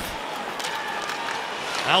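Hockey arena ambience: a steady crowd murmur with skates and sticks on the ice, and a faint click or two from the play.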